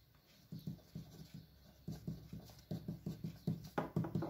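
Pen writing on paper on a desk: a run of short, irregular strokes and light taps as a word is written, starting about half a second in.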